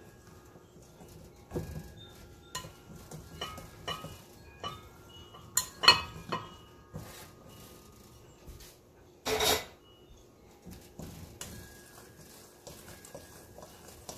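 A metal fork scraping and clinking against a glass mixing bowl in an irregular rhythm as wet biscuit dough is worked into flour. There is a louder clink about six seconds in and a short, harsher scrape about halfway through.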